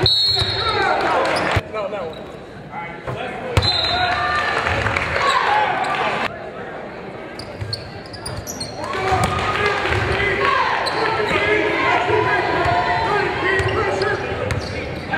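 Basketball game sound in a large gym: voices calling and shouting, and a basketball bouncing on the hardwood court, all echoing in the hall.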